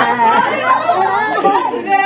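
Several people talking and exclaiming over one another: overlapping chatter.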